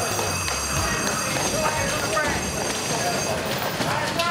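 A train running on a railway line, with wheel squeal, mixed with indistinct voices. A bass-heavy music beat stops about a second in.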